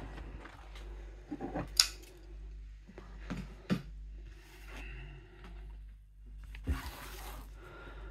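Handling noise from a cardboard LP sleeve being lifted off a wooden easel and laid on a table. There are a few light sharp knocks and taps, and near the end a brief sliding rustle, over a low steady hum.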